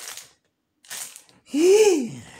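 A person's voice: a short hissy breath about a second in, then a loud, short vocal outburst near the end, rising and falling in pitch once.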